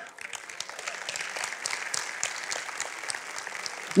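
Congregation applauding: many hands clapping in a steady spread of claps, quieter than the preacher's voice around it.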